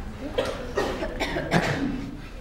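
A person coughing several times in quick succession, short sharp coughs over about a second and a half.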